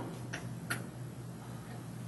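A few faint, light clicks, two close together in the first second, over a steady low electrical hum.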